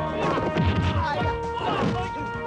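Film fight sound effects: a run of crashes and hits, with the heaviest thuds about halfway through, over dramatic background music.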